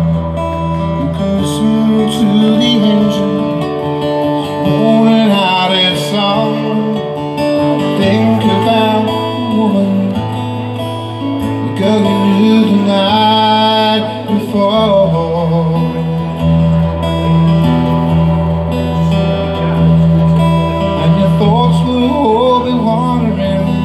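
Acoustic guitar played live, strumming a slow intro with chords that change every few seconds. A wavering melody line rises above the chords at several points.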